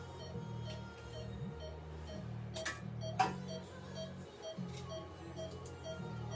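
Veterinary anaesthesia monitor beeping steadily, a short beep about twice a second in time with the dog's heart rate, over background music. Two sharp clicks come about halfway through.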